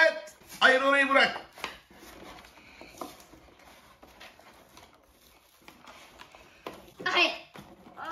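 Short bursts of voices, a child's among them, about a second in and again near the end, with faint handling noises of cardboard toy packaging in the quiet stretch between.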